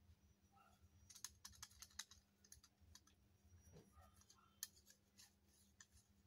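Faint clicks and small taps from fingers working the plastic knobs and steel body of a miniature toy gas stove: a quick run of clicks from about a second in, then a few single ticks.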